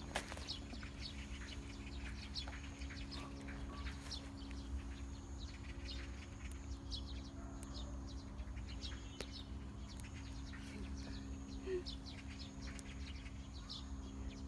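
Faint, scattered bird chirps over a steady low hum.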